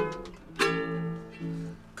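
Ukulele strummed: a few chords, each struck sharply and left ringing until it fades.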